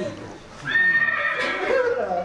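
A recorded horse whinny played back from a sound file. One high call starts about half a second in, holds its pitch, then falls away over about a second.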